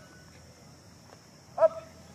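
A man shouting the push-up command "Up" once near the end, a short, loud call that falls in pitch. Before it there is only a low background with a steady high hiss.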